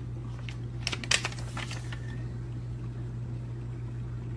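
Steady low room hum with a few light clicks and taps about a second in.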